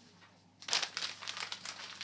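A faint crinkling, rustling noise that starts suddenly a little under a second in and goes on in irregular crackles.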